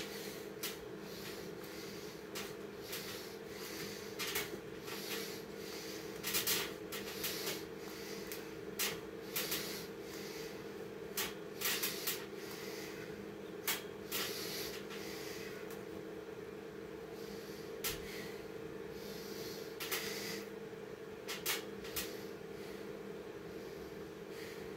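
A man doing a set of ten pull-ups on an overhead bar: short, sharp breaths and knocks from the effort come every second or so, with a pause about two-thirds of the way through, over a steady low hum.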